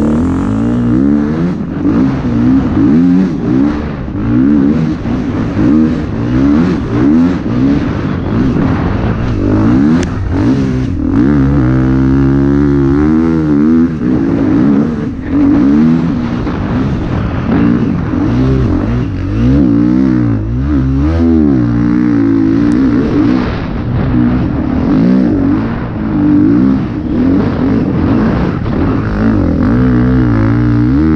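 Dirt bike engine revving hard under load in deep sand, its pitch climbing and dropping again and again as the throttle is worked and gears change, with a steady rush of wind over it.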